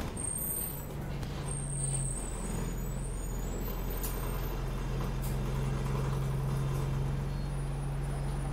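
Alexander Dennis Enviro 200 single-deck bus engine running steadily as the bus drives along, heard from inside the passenger saloon. The engine note dips briefly about two seconds in. Thin high whines sound in the first few seconds, and a sharp click comes about four seconds in.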